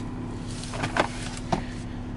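A few short plastic clicks and knocks from handling the van's interior trim, the loudest about a second in, over a steady low hum in the cabin.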